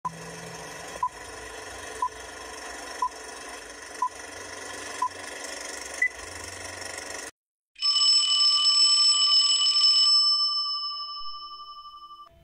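Film countdown leader sound effect: hiss and crackle of old film with a short beep once a second, six beeps, the last one higher in pitch. After a brief gap, a bright ringing chime of several pitches at once sounds and slowly fades out.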